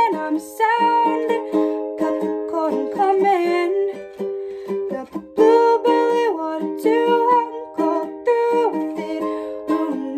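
A Cordoba ukulele strummed in a steady rhythm, with a young woman's solo singing voice gliding over it in a small room.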